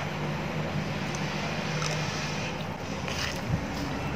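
A pestle mashing and stirring a wet paste of raw crayfish in a mortar: soft squelching and scraping over a steady low hum, with a light knock about three and a half seconds in.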